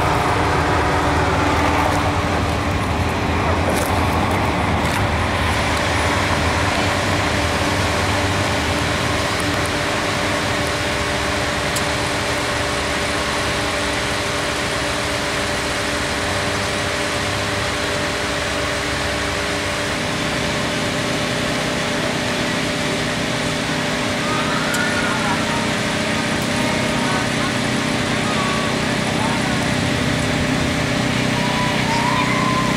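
Parade vehicles' engines running steadily, a fire engine and a pickup towing a float among them, with a low rumble that falls away about two-thirds of the way through. Voices of onlookers are heard alongside.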